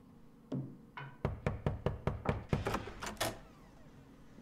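Rapid knocking on a front door: a single knock, then a quick run of about a dozen sharp knocks at roughly five a second that stops short about three seconds in.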